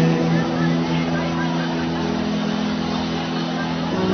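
Worship background music: a steady held keyboard chord, shifting to a new chord near the end, with faint voices praying under it.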